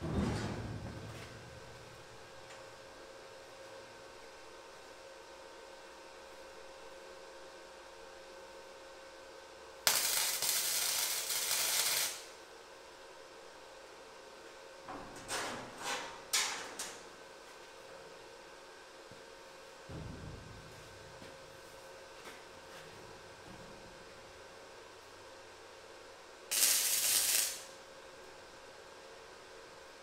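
Flux-core wire welder laying tack welds: a hissing weld of about two seconds around ten seconds in, three quick short ones a few seconds later, and a last one of about a second near the end. A single low thump falls in between, about twenty seconds in.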